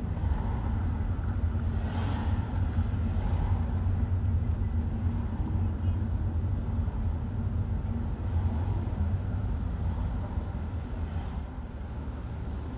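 Steady low rumble of a car driving slowly in city traffic, with a few brief swells of passing-traffic noise.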